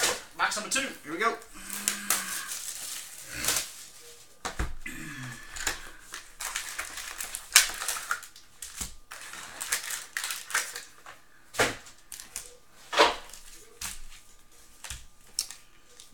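Cardboard hobby boxes and foil-wrapped trading-card packs handled on a tabletop: an irregular run of sharp knocks, taps and clicks with some rustling as a box is tipped and its packs slide out and are stacked.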